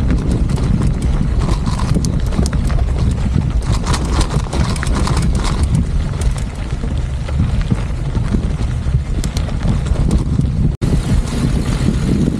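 Mountain bike rolling fast downhill on a loose gravel dirt road: knobby tyres crunching and clattering over stones under a steady heavy low rumble. The sound cuts out for an instant near the end.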